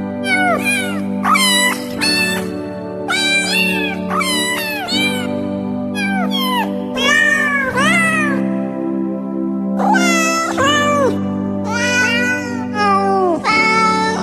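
A music track built from cat meows: a run of short pitched meows, each rising then falling, strung into a tune over a steady held backing chord.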